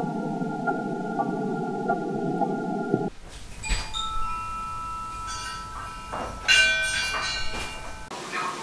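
A steady layer of held tones over a low noise, cut off sharply about three seconds in. Then come scattered bell-like chimes at several pitches, each struck and left ringing, with a loud cluster of strikes near the end.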